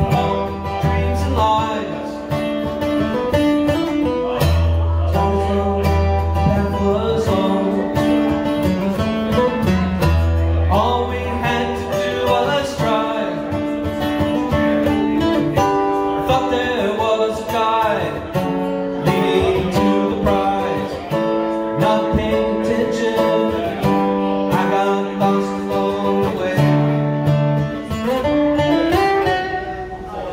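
Acoustic guitar strummed in a steady rhythm, the chords changing every second or two.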